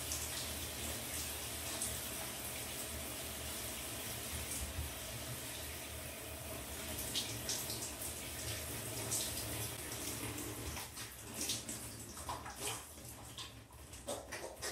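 Shower spray running steadily, with a few louder splashes in the second half and the flow sounding patchier near the end.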